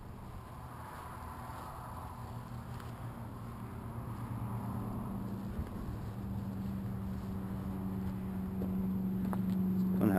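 A steady, even-pitched machine hum that grows gradually louder throughout.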